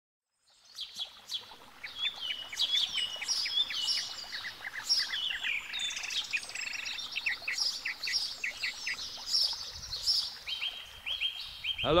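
Several songbirds singing together, a dense chorus of repeated chirps and trilled phrases that starts just under a second in.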